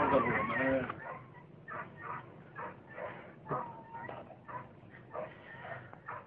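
Faint, short animal calls repeating about twice a second, after a voice that trails off in the first second.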